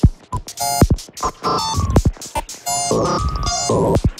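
Experimental modular-synthesizer music. It opens with sharp electronic hits that drop in pitch, then brief bursts of stacked beeping tones, and moves into longer sustained synth tones in the second half.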